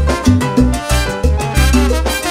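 Live salsa orchestra playing an instrumental passage: a bass line pulsing in a steady rhythm under a brass section of trumpets and trombones, with percussion.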